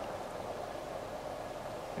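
Pause in speech: steady outdoor background noise, an even hiss with no distinct events.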